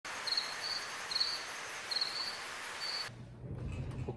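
A cricket chirping: about six short trilled chirps over a steady high hiss, cutting off abruptly about three seconds in.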